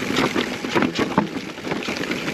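Mountain bike rolling fast over a rough, rocky dirt trail: tyres on rock and dirt and the bike rattling, in a quick run of small knocks and clatters.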